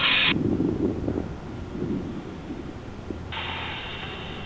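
Dark, horror-like sound design from a music video's intro: a burst of hiss that cuts off just after the start, then low rumbling swells, and a steady hiss coming back about three seconds in.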